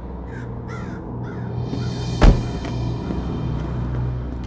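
Crows cawing several times in short falling calls over a low, steady musical drone, then a single loud boom just over two seconds in.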